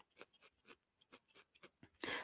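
Near silence broken by faint, irregular ticks, about a dozen in two seconds, from a felting needle jabbing into wool.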